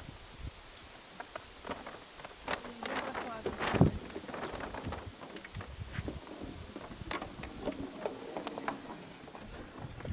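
Scattered knocks, clicks and rustling as a windsurf rig (sail, mast and boom) is lifted and handled on a wooden dock; the loudest knock comes a little under four seconds in.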